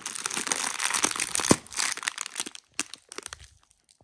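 Plastic Cadbury chocolate pouch crinkling loudly as it is squeezed under a hand, with one sharp pop about a second and a half in as it bursts, then a few scattered crackles as the bag is handled.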